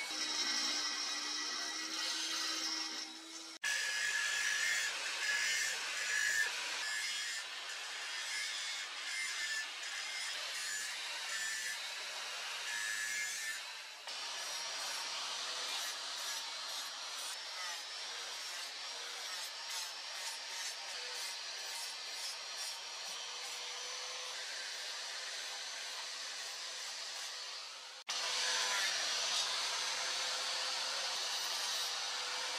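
Electric grinders grinding the steel of a hand-forged machete blade. First a die grinder with a mounted abrasive stone runs with a steady whine, then an angle grinder with a flap disc grinds the edge bevel with a continuous gritty rasp. The sound changes abruptly at about 4, 14 and 28 seconds in.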